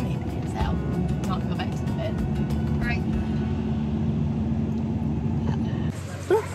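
Steady low road and engine rumble inside the cabin of a moving vehicle.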